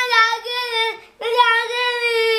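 A young boy wailing in long, drawn-out cries: one held wail that breaks off about a second in, then another starting straight after.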